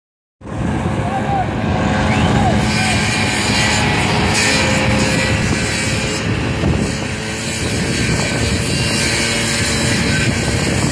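A backpack blower's small engine running steadily at high speed, with a constant rushing drone.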